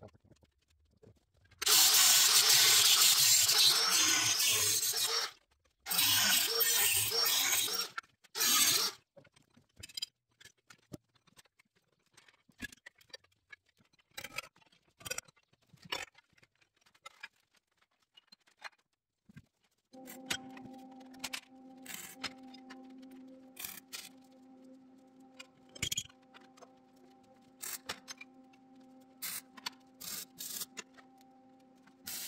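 Angle grinder cutting through steel bed-frame angle iron in three passes, the longest about three and a half seconds, then knocks and clanks of the cut steel being handled. From about two-thirds of the way in, a steady low hum runs with scattered clicks.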